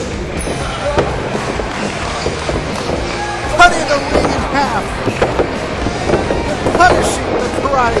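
Background music mixed with crowd voices from a wrestling show, with two loud shouts standing out: one about three and a half seconds in and another near the end.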